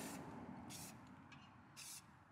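Paint being sprayed in several short, faint hissing bursts about half a second to a second apart.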